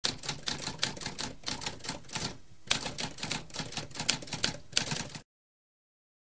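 Typewriter keys clacking rapidly, several strikes a second, with a brief pause about halfway through, stopping a little after five seconds.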